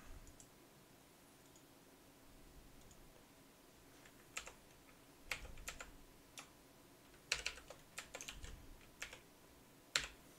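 Faint typing on a computer keyboard: nearly quiet at first, then irregular key clicks over the second half as a word is typed.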